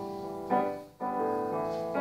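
Piano playing slow chords: one chord struck about half a second in dies away almost to nothing, and the next rings on steadily.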